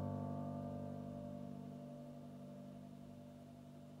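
The final chord of a song on a Yamaha CP40 Stage digital piano, held and slowly dying away, fading out near the end.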